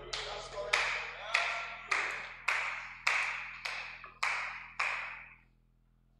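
Hand claps in a steady rhythm, a little under two a second, each ringing briefly in the hall. About nine claps, stopping shortly before the end.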